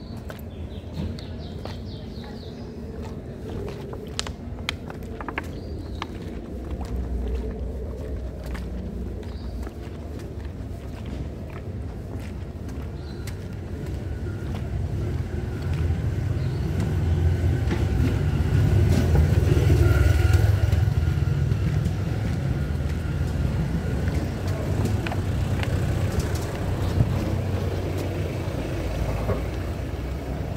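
A car driving past on a cobblestone street, its low rumble building from about halfway through and loudest about two-thirds of the way in, with footsteps and small knocks early on.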